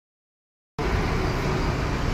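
Steady road traffic noise, cutting in suddenly just under a second in after silence.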